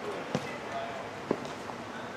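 Futsal ball being played on artificial turf: two sharp thuds about a second apart, with a few fainter knocks between them.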